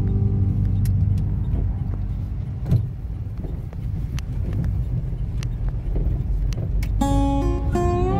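Road noise inside a car's cabin on a dirt road: a low rumble with scattered light knocks and one louder thump a little under three seconds in.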